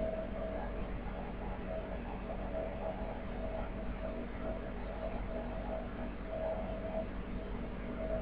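Steady background room noise with a faint, wavering hum; no distinct event stands out.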